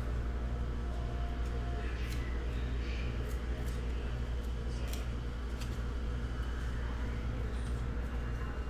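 Stiff glossy Topps Chrome baseball cards being flipped through by hand, one card slid off the stack at a time, each with a short crisp flick or click at irregular intervals. A steady low hum runs underneath.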